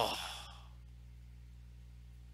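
A man's drawn-out, sighing "oh" falling in pitch in the first half second, trailing off into breath. After that, only a steady low electrical hum.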